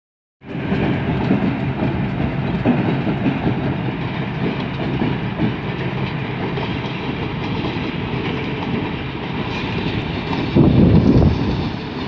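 A pair of remote-controlled diesel switcher locomotives running as they roll over the track, a steady low rumble with a louder stretch near the end.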